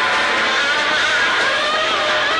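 Live punk band's distorted electric guitar ringing out in a loud, sustained drone with no drumbeat, its pitch wavering.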